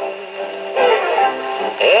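Orchestral dance-band accompaniment played from a 1946 Decca 78 rpm shellac record on a portable gramophone. It plays a short instrumental phrase between sung lines, with a rising glide near the end as the next line comes in.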